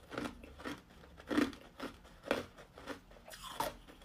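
Hard clear ice cubes being chewed with the mouth closed: a steady run of crunches, about one every half second, the loudest a third of the way in and just past halfway.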